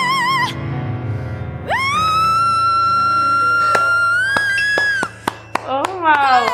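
A female singer with piano accompaniment: a note with vibrato ends, then she holds one long high note that lifts slightly before it cuts off about five seconds in. A few sharp claps follow near the end.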